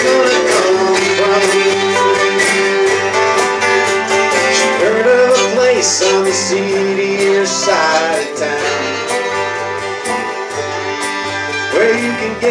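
Live country-bluegrass band playing: strummed acoustic guitars with voices singing together over a steady beat.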